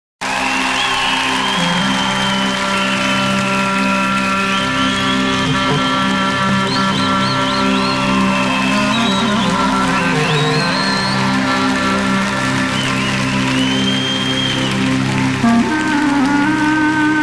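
Instrumental introduction of a Bulgarian folk song played live by a band: steady held drone notes under a high, ornamented melody with quick trills and slides.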